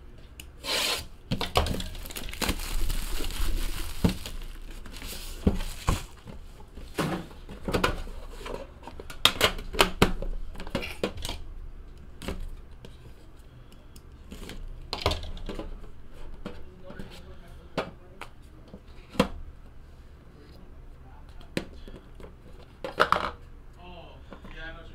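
Cardboard card box being handled and opened: irregular rubbing, knocks and clicks of packaging on the table, with a stretch of tearing near the start and a knife slicing through the inner box's seal.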